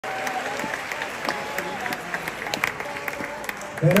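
Concert audience applauding, with crowd voices mixed in. Near the end a man starts talking over the PA.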